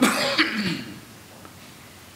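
A man clearing his throat once, briefly, at the start.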